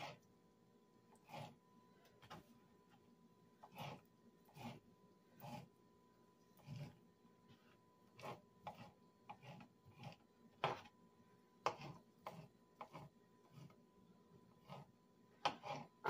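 Kitchen knife chopping sliced ham on a plastic cutting board: faint, irregular taps of the blade on the board, about one or two a second.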